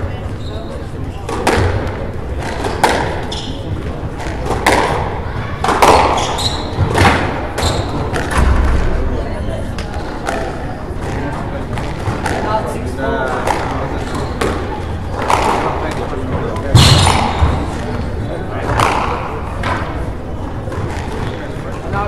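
Squash rally: the ball is struck by rackets and hits the court walls with sharp cracks every one to two seconds.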